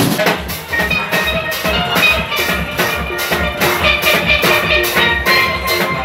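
Steel pan band playing an upbeat tune, the pans' ringing notes over a steady drum beat.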